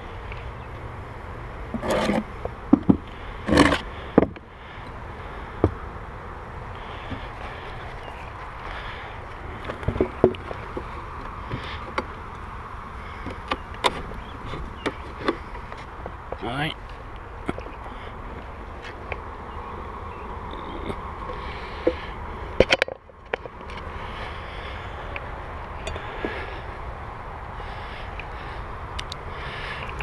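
Wooden hive boxes and frames knocking and scraping as an empty deep hive body is set onto a colony, over a steady buzz of honeybees. The loudest knocks come about two to four seconds in and again past the middle.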